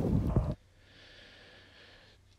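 Wind rumbling on the microphone outdoors, cut off abruptly about half a second in. A faint steady hiss follows.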